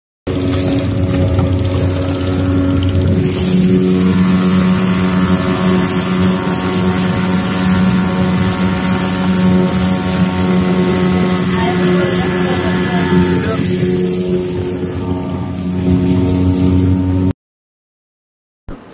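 Speedboat engine running steadily at speed, over the rush of water and wind. The engine grows louder a few seconds in, eases off near the end, then cuts off suddenly.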